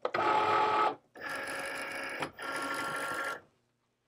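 Cricut Maker cutting machine loading its cutting mat: the motors whir in three short runs as the rollers draw the mat in and position it, the first run the loudest, then stop.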